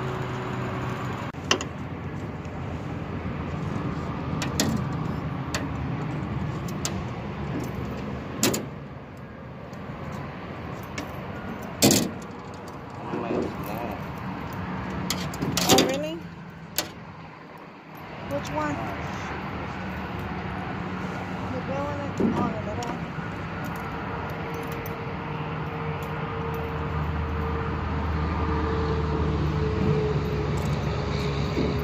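Fishing tackle being handled and cast from a small boat: scattered sharp clicks and knocks from the rod, reel and boat, the loudest near the middle as the rod is swung for a cast, over a steady low hum.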